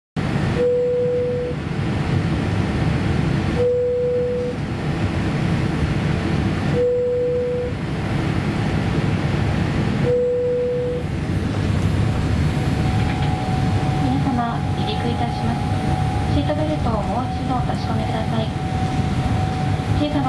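Cabin noise of a Boeing 787-8 taxiing, a steady low rumble. In the first half a single beep sounds four times, about three seconds apart, each about a second long. From about two-thirds in, a cabin announcement comes over the aircraft's speakers.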